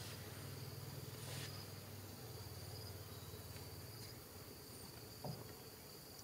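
Insects trilling steadily on one high note, faint, with a low rumble under the first few seconds and a single short knock about five seconds in.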